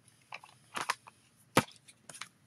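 Handling noise: a few light clicks and knocks as a plastic stamp-set case and a craft punch are picked up off the tabletop, with one sharper knock about one and a half seconds in.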